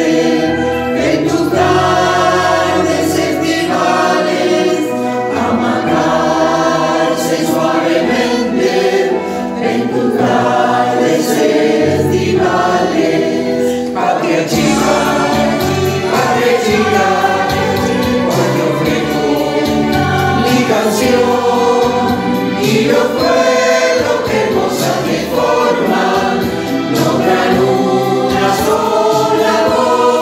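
A choir singing a hymn, several voice parts at once.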